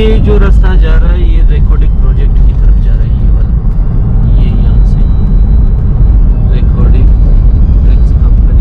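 Car interior noise at highway speed: a loud, steady low rumble of tyres on asphalt and wind, heard from inside the cabin.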